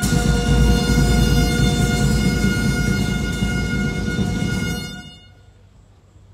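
Brass music ending on a long, loud held chord that fades out about five seconds in.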